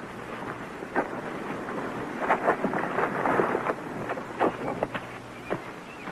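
A shovel scraping and striking dry, loose earth, in irregular crunching scrapes and knocks that come thickest midway through.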